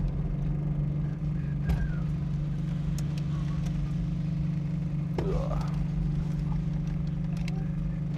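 Honda Z600's small air-cooled two-cylinder engine running steadily at low speed, an even low drone.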